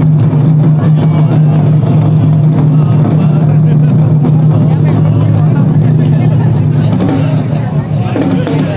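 Taiko drum ensemble playing a fast, continuous roll, the strikes merging into a loud, steady rumble that dips slightly near the end.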